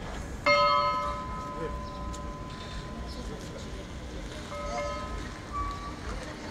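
Church bell rung by pulling its rope: one loud strike about half a second in that rings on and slowly fades, then a second, weaker strike a few seconds later.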